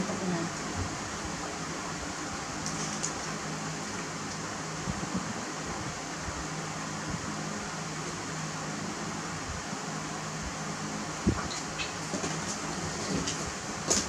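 Steady background room noise, an even hiss with a low hum, broken by a few faint clicks and taps.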